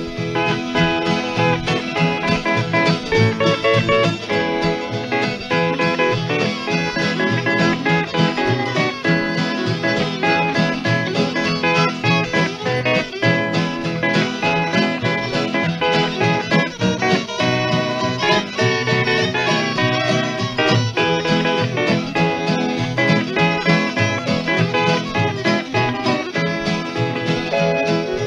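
Instrumental break of a 1945 country string-band recording, with guitars, steel guitar, bass and fiddle playing a steady beat, heard from a 78 rpm shellac disc.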